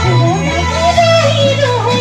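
A woman singing a bending, wavering melody over a live band, with a held bass note underneath.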